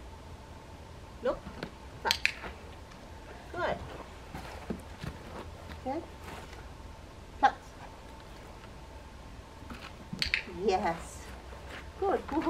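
A few short, quiet vocal sounds from a woman's voice, scattered with pauses of a second or more between them, with a faint steady tone underneath.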